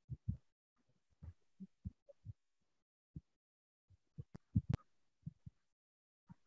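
Computer mouse and desk handling noise: a string of soft low thumps at irregular intervals, with two sharp clicks about four and a half seconds in, as the mouse scrolls and clicks.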